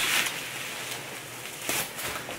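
Plastic bubble wrap rustling and crinkling as it is pulled off a wooden box, with a louder burst of crinkling shortly before the end.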